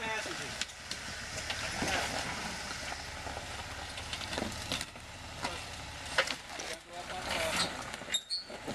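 Jeep Wrangler crawling over creek-bed rocks: the engine runs low and steady at crawling speed while tyres and underbody crunch and scrape on stone, with several short sharp knocks along the way.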